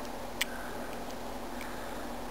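A single short click about half a second in as a small plastic LED light's snap connector is pressed onto a 9-volt battery's terminals, over a steady low hiss.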